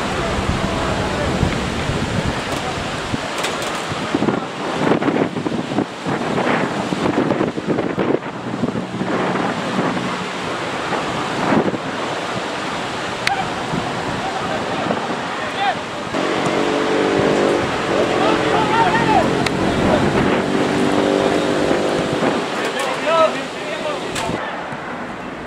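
Football match sound: scattered shouts from players and spectators over a constant rush of wind on the microphone. For several seconds past the middle a steady droning sound runs under the voices.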